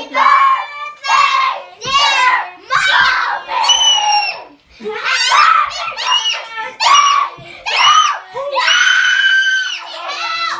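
Young girls shrieking and shouting excitedly in short bursts about once a second, several voices together, with one longer held shriek near the end.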